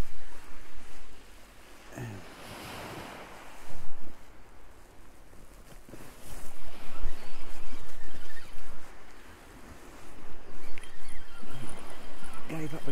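Waves washing up and draining back over a shingle beach, the noise rising and falling in surges every few seconds.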